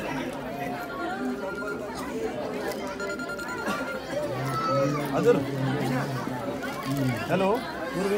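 Many people talking at once in a crowded room, with music playing in the background.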